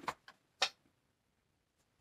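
A few light clicks and taps of cards being handled on a table, three in the first second, then quiet.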